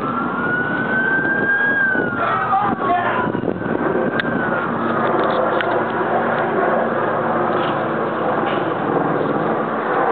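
Police car siren wailing: one slow rise and fall in the first three seconds, then a fainter falling wail, over steady street and traffic noise.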